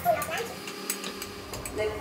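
Brief wordless voice sounds near the start and again near the end, with a few light clicks of a spoon against a pot in between.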